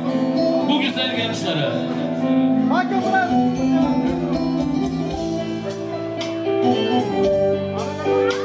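Wedding band music with a man singing over sustained instrument notes.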